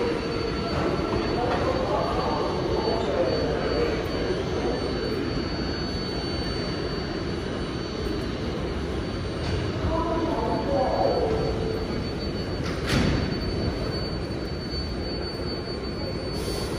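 Subway platform ambience with an R188 7 train standing at the platform: a steady dense rumble with a thin steady high whine running under it, voices in the crowd coming through twice, and one sharp clack about thirteen seconds in.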